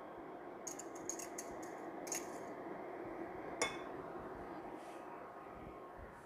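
Faint, light clinks and taps of kitchen utensils and dishes being handled: a cluster about a second in, then single ones about two and three and a half seconds in, over a steady low hum.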